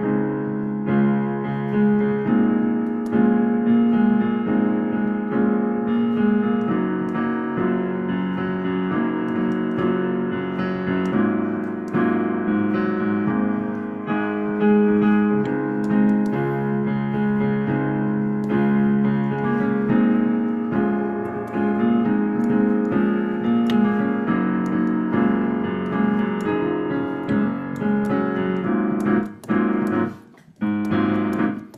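Digital piano played in a steady, rhythmic jazz comping pattern, with repeated chords over a low bass line and no drums or bass. It has the narrow, dull sound of a video-call feed. The playing stops briefly at the very end.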